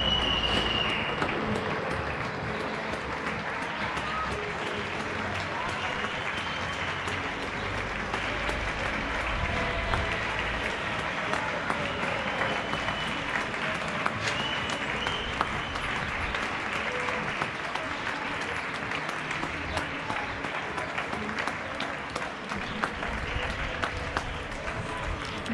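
Many people clapping from balconies and windows across the apartment blocks, a steady crackle of hands echoing between the buildings. A few faint rising-and-falling tones of a police siren sound over it at times.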